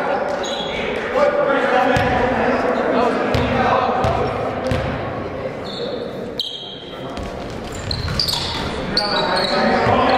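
Basketball game sounds echoing in a large gym: a basketball bouncing on the hardwood floor now and then, under steady voices of players and spectators. The sound drops briefly a little past the middle, then picks up again near the end.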